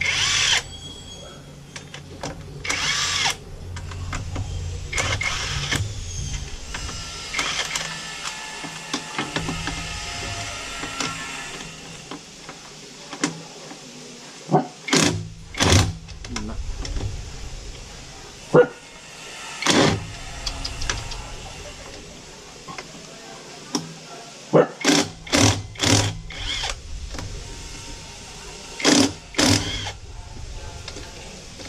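Cordless impact wrench run in short bursts a few seconds apart, several in quick succession near the end, spinning out the bolts of a scooter's body panel.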